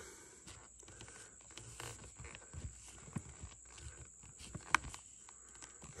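Quiet outdoor background with a few faint, scattered taps and clicks, and one sharper click a little under five seconds in.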